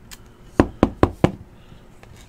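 Four quick knocks about a fifth of a second apart: a trading card in a hard plastic holder being tapped on its edge against the table.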